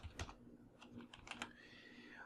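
Faint computer keyboard typing: a scattering of separate key clicks as code is entered.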